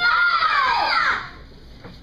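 A child's high-pitched voice: one drawn-out call lasting about a second, its pitch sagging at the end, followed by quieter room noise in a large hall.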